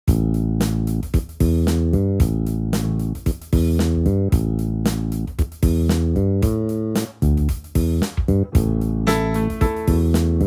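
Instrumental blues intro: a repeating riff of short plucked bass-guitar notes with guitar. Higher guitar notes join near the end.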